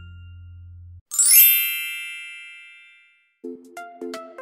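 Background music with mallet percussion ends on a held low note. About a second in, a bright shimmering chime sound effect rings out loudly and fades over about two seconds. Near the end a new tune with repeated chords starts.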